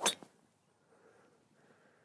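A golf driver striking a teed ball: one short, sharp crack of impact right at the start.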